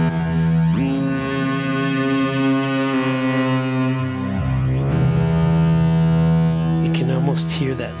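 Modular synthesizer voice from a Mutable Instruments Elements resonator excited by a Z3000 oscillator's sweeping pulse, playing sustained pitched notes that change about a second in and again around four seconds in. Its brightness is being opened up by hand, and brighter upper harmonics fill in about a second in.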